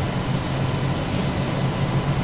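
Steady low background hum with no other event.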